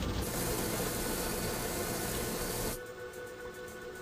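Water spraying in an automatic car wash, a steady hiss that cuts off suddenly near the three-second mark. Soft background music runs underneath.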